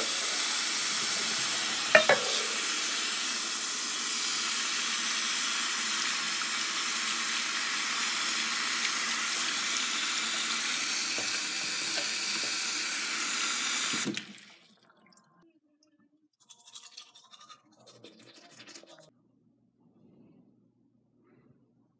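Bathroom-sink faucet running at full flow, a steady hiss of water pouring into the basin and splashing into a small metal cup under the spout, with one sharp knock about two seconds in. The water cuts off abruptly about fourteen seconds in.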